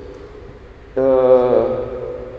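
A man's voice holding one drawn-out vowel for about half a second, about a second in, dropping slightly in pitch toward its end.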